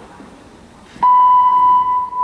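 A loud, steady, single-pitch electronic beep that starts abruptly about a second in and holds. Before it there is only faint hall room noise.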